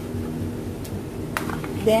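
A spoon stirring cheese into creamy carbonara sauce in a frying pan: two or three light clicks over a steady low hum.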